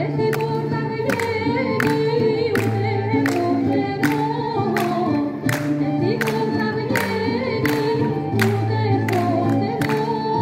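Traditional Greek folk dance music: singing over instrumental backing, with a steady percussive beat.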